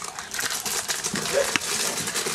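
Crinkling and rustling from packaging and treats being handled, with a sharp click about one and a half seconds in.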